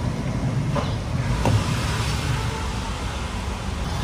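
Steady low rumble of street traffic, with a faint click about a second and a half in as the car's tailgate latch is released.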